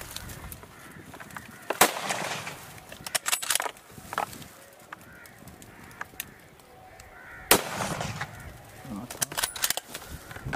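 Several sharp bangs, the loudest about two seconds in and again about seven and a half seconds in. Animal calls come between them.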